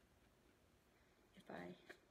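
Near silence: room tone, then a few softly spoken words near the end.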